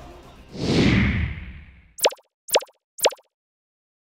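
A whoosh sound effect swells and fades, then three quick pops follow half a second apart, each a short blip dropping in pitch: graphics sound effects for the channel's outro card.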